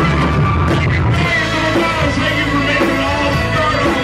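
Live rock band playing loudly: drums, bass and guitar, with a man singing over them.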